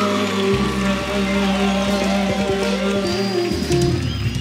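Live band of keyboards and drums playing the instrumental close of a Gulf Arabic song: sustained chords held over a bass line that changes note twice, with light cymbal touches.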